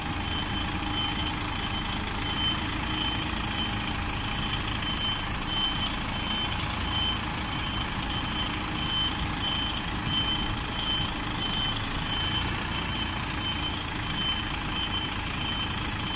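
DAF articulated lorry's diesel engine running low as the tractor unit slowly reverses its trailer, with the reversing alarm giving evenly repeated beeps throughout.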